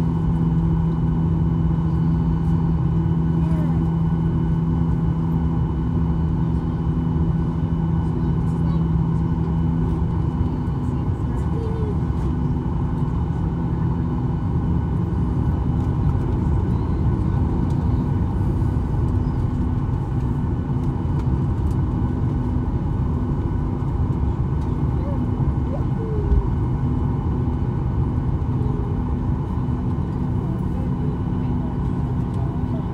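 Jet airliner cabin noise while taxiing: the engines run at idle, giving a steady rumble with several steady hums. The lowest hum fades out between about ten and fifteen seconds in.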